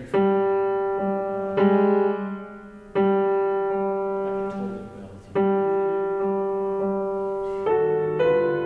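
Grand piano playing slow, sustained chords, each struck and left to ring and fade. Much the same chord sounds four times, roughly every one and a half to two and a half seconds, then a new, higher chord comes in near the end.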